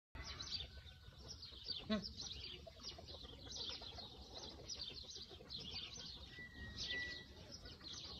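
Many small birds chirping and singing without pause, with a brief whistled note a little before the end. About two seconds in there is one short low grunt-like 'huh'.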